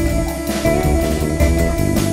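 Jazz trio studio recording: guitar, bass and drums playing together, with a busy, fast-moving line over the bass and drums.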